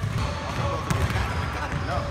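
Basketballs bouncing on a hardwood gym court, with people talking in the background.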